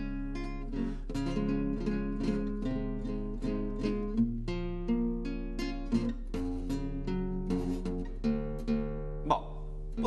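Classical guitar played solo, a continuous melody of plucked notes and chords with occasional strums, with a sharp strummed chord near the end. There is no singing.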